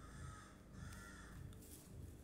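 A bird calling twice, faint: a short call right at the start and a longer one about a second in.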